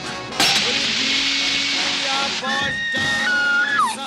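A sharp strike, then a jet of water hissing as it sprays up out of the ground from a burst buried pipe, lasting about two seconds. It gives way to held, pitched tones.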